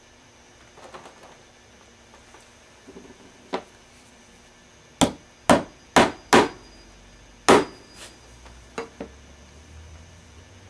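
Hammer driving tacks through leather saddle strings into the saddle tree to hold them tight. After a light tap, there are four sharp strikes about half a second apart, one more a second later, and a faint tap near the end.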